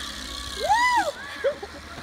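A woman's high-pitched squeal that rises and falls once, followed by a shorter, quieter second squeal.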